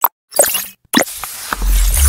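Logo-animation sound effects: a few quick pops, then a rushing sound and a deep bass boom about one and a half seconds in.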